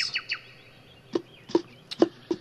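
A small bird chirping: a fast run of high chirps fades out just after the start, then a few faint short calls. Several sharp clicks sound about a second in and near the end.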